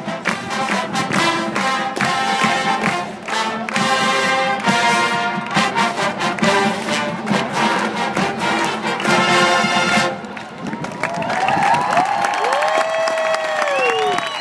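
High school marching band, brass and percussion, playing a fight song that ends sharply about ten seconds in, followed by the crowd cheering.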